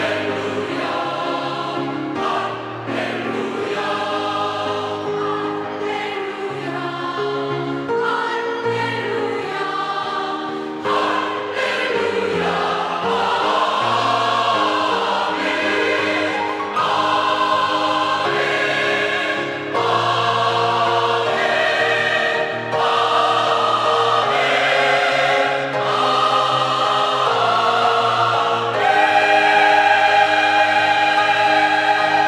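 Mixed choir of women's and men's voices singing 'Hallelujah' and then 'Amen' in sustained chords, growing louder about a third of the way in and again near the end.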